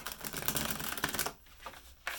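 A deck of tarot cards being shuffled by hand: a fast, dense run of card clicks for about a second and a half, then a few softer flicks near the end.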